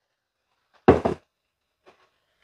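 A short double knock about a second in, like a glass sauce bottle being set down on a hard countertop.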